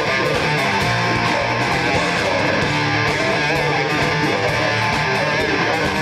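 Live heavy metal band playing at full volume: distorted electric guitar through a Peavey 5150 amplifier, with bass, steady drumming with cymbals, and vocals into a microphone.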